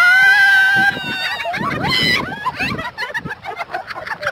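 A playful high-pitched scream held for about a second, then a shorter, higher squeal about two seconds in, among laughing and chattering voices.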